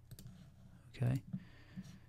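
A few faint clicks at a computer while switching files, over quiet room tone, with a single spoken "okay" about a second in.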